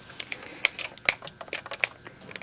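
A handheld plant mister's trigger being worked: a quick run of short, sharp clicks, about four or five a second.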